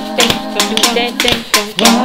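Several layered a cappella voice parts singing together over a steady beat played on kitchen utensils: a wooden spoon, a colander and a rice-filled shaker. The beat is a few sharp taps or shakes each second under the held sung notes.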